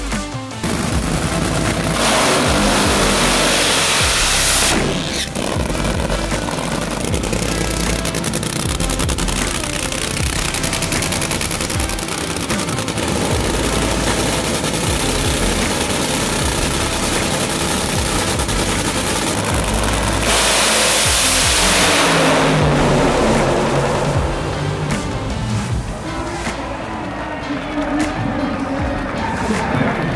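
Nitromethane Funny Car's supercharged engine running at the starting line, with music underneath. It is loud throughout and loudest in two spells, about two seconds in and again about twenty seconds in.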